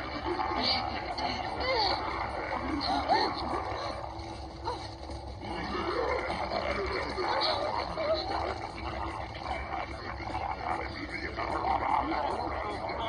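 Cartoon soundtrack played through a tablet's speaker: a swarm of Bugrom insect monsters chattering and squealing, many overlapping cries gliding up and down in pitch at once.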